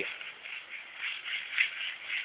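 Sand being scraped and stirred by a child's hands in a plastic sandbox: an irregular, uneven scraping.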